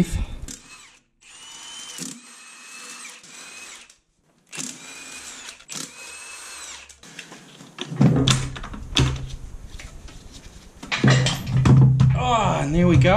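Handheld electric power tool of the drill type running in two bursts of about three seconds each, its motor whine rising as it spins up and falling as it stops, backing out gearbox bolts. Music with a heavy bass comes in about eight seconds in.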